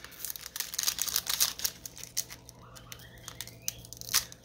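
Foil Pokémon booster pack wrapper crinkling and tearing as it is pulled open by hand: a run of small crackles, densest in the first couple of seconds and sparser after.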